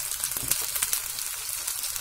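Freshly cut okra sizzling in hot oil in a kadhai among fried onions and green chillies, a steady hiss with many small pops, just after the okra has been added to the pan.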